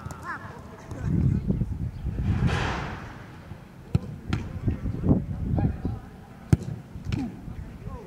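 Footballs being kicked and caught in goalkeeper drills: a scatter of sharp thuds from about four seconds in, the sharpest one near six and a half seconds. Men's voices call in the first part.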